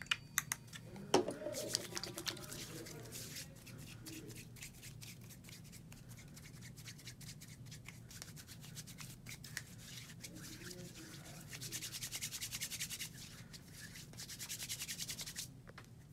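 Hand sanitizer gel squeezed from a small plastic bottle into a palm, with a few sharp clicks near the start, then hands rubbing together with the gel: a faint, fast, even swishing that grows briskest near the end.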